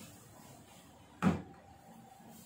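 A single thud about a second in as the plastic cabinet of a Kiniso QS-400 Bluetooth speaker is set down on a tabletop.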